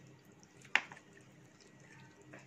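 Hands handling raw marinated whole chickens in a metal roasting tray: mostly faint, with one short, sharp click about three quarters of a second in.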